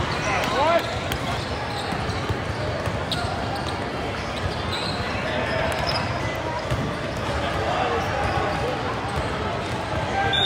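A basketball bouncing on a hardwood court during a game, with players' calls and background voices in a large indoor gym.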